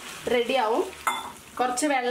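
Silicone spatula stirring onions and capsicum through sauce in a nonstick frying pan, with a light sizzle. A person talks over it, in two short stretches.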